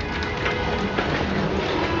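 Dover hydraulic elevator car running, a steady rushing noise with faint light clicks about half a second and a second in.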